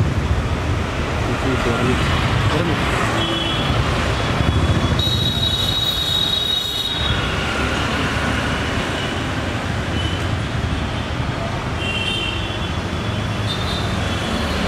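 Steady street traffic: vehicle engines running and passing with a continuous low rumble. About five seconds in a high-pitched squeal rings for about two seconds, and shorter high tones come and go at other moments.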